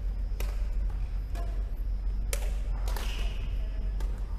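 Badminton rackets striking a shuttlecock in a rally: several sharp, crisp hits roughly a second apart, the last two close together, with a few brief squeaks between them, over a steady low rumble.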